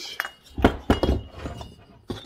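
Metal chainsaw cylinders and parts knocking and clinking on a wooden workbench as they are handled: a few short knocks, one followed by a faint metallic ring.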